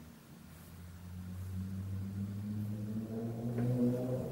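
A low, steady engine-like drone that grows louder from about a second in, with higher overtones joining near the end.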